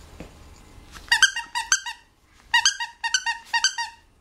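Squeaky plush toy squeezed by hand in two runs of quick, high squeaks, the first about a second in and the second, longer run from about two and a half seconds in.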